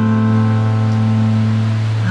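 Acoustic guitar ringing one steady, sustained low note between sung lines, its upper overtones slowly fading.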